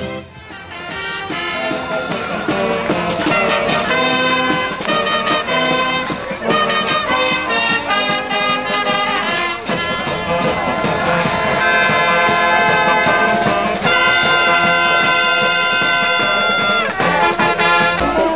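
A brass band playing a tune, rising in loudness over the first few seconds and then holding steady.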